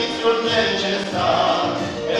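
Music: two girls singing a hymn duet in sustained notes over an accompaniment with a regular low beat.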